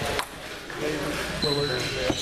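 A single sharp click of a celluloid table tennis ball striking a table or paddle shortly after the start, over background talk in the hall.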